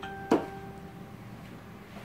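A single sharp click about a third of a second in, over a faint steady tone that fades within the first second, then low room noise.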